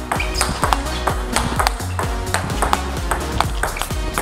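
A table tennis ball in a fast rally, clicking sharply off the rackets (one of them a new Pongfinity Sensei racket) and bouncing on the table, over background music.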